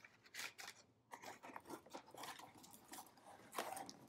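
Faint, scattered rustles and crinkles of brown kraft packing paper being pulled out of a cardboard shipping box, with small scrapes of the cardboard being handled.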